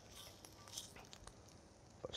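Near silence: a faint sizzle of turkey krakowska sausage slices on a hot grill pan, with a few soft ticks.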